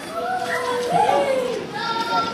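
Several young voices calling out and chattering over one another, with no clear words, their pitch sliding up and down in long drawn-out exclamations.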